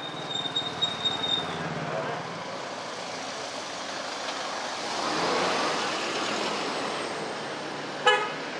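Street traffic noise, with a motor vehicle passing close by: the sound swells to its loudest about five seconds in, then fades.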